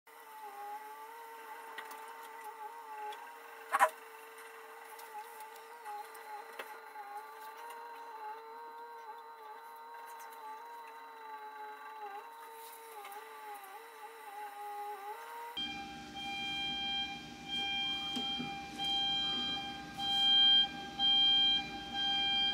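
A wavering machine whine from the rock-blasting site. After a cut, a rising series of loud on-off warning tones sounds: the warning signal before a rock blast.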